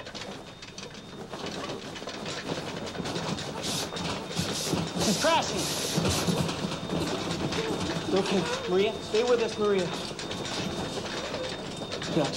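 A hospital emergency commotion: medical staff rush to a patient's bed amid clattering and bustle, with raised, indistinct voices that grow louder about five seconds in and again near the end. A thin steady high tone runs underneath.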